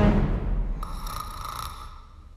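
The tail of the music dies away, then a single cartoon snore sound effect lasts about a second. It suggests the sleepy character has dozed off again.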